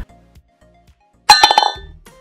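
Short bright chime sound effect of an animated logo sting: it comes in suddenly about a second and a quarter in, out of near silence, as a quick cluster of clinking, ringing tones that die away within half a second.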